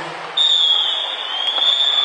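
A roller derby referee's whistle blown in one long high blast, starting about a third of a second in and held on, its pitch sagging slightly in the middle.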